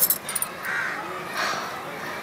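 Two short, harsh animal calls, under a second apart.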